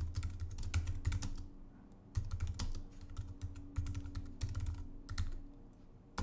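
Typing on a computer keyboard: a quick run of key clicks, a short pause about one and a half seconds in, then a second run of typing.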